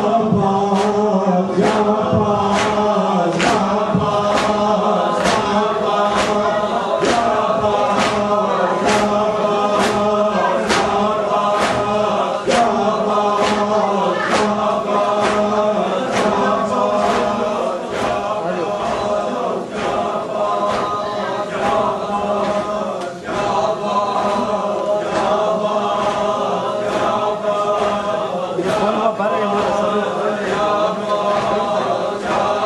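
A congregation of men chanting a mourning lament together in unison, kept in time by sharp rhythmic beats a little more than once a second, the sound of hands striking chests (matam).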